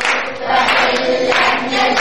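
A group of voices singing a song together, in chorus.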